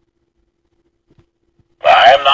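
Near silence between two recorded quotations of a talking action figure, with a faint steady hum and a faint click about a second in. Near the end the figure's recorded male voice begins its next quotation.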